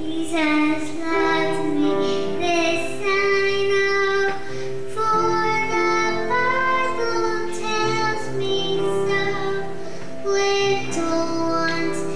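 A young boy singing into a microphone, holding long notes over an instrumental accompaniment.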